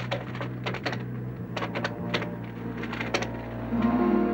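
A telephone being dialed: groups of sharp clicks, then music coming in near the end.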